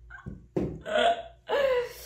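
Short non-word vocal sounds from a woman: two bursts, the second with its pitch sliding downward.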